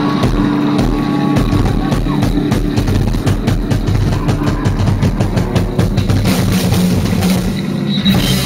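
Live rock band playing loud: electric guitars, bass and a drum kit. Through the second half the drum hits come faster and denser, building into a new, louder section right at the end.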